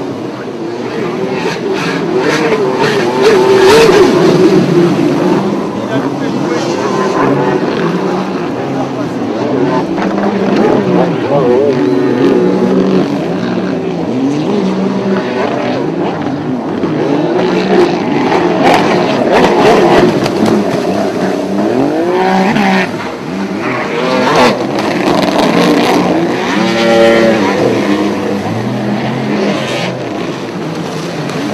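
Racing jet ski (runabout personal watercraft) engines running hard, their pitch rising and falling repeatedly as the riders accelerate and ease off.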